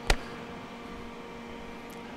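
A single sharp click just after the start, over a faint steady hum with a few held tones.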